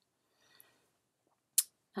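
Faint handling rustle, then a single sharp click near the end as the plastic cap of a foundation bottle is opened.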